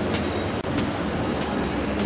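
Shopping-mall ambience: a steady indoor din with a low hum, scattered light clicks and a brief dropout about half a second in.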